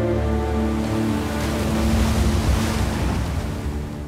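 Background music of long held notes, joined by a swelling rush of sea water and spray that peaks about halfway through; both fade out near the end.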